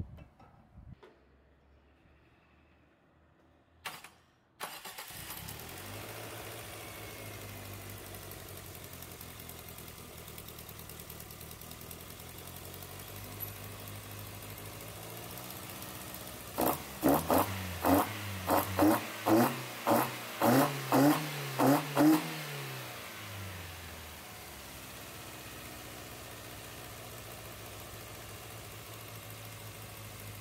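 Toyota Starlet four-cylinder engine starting about four seconds in and idling steadily, then blipped quickly about ten times in a row before settling back to idle.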